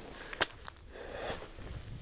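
Footsteps on gravel, with one sharp click about half a second in.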